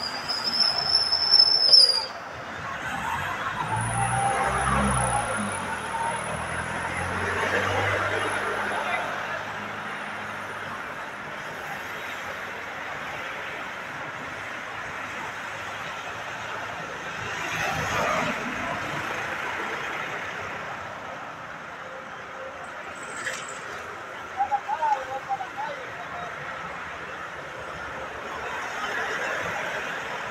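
Roadside traffic: vehicles passing now and then, with a low rumble a few seconds in and another swell in the middle, over faint voices. A high, slightly rising whistle-like tone in the first two seconds is the loudest sound.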